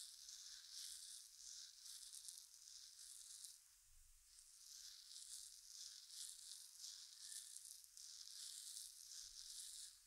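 Fingertips rubbing and kneading through hair and oiled skin at the base of the skull, a faint run of soft rustling, swishing strokes with a short lull about four seconds in.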